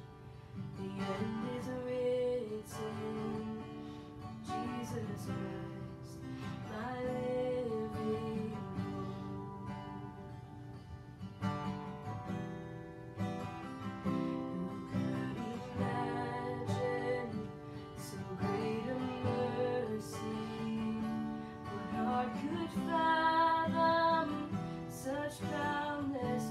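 A woman singing a slow worship song while strumming an acoustic guitar.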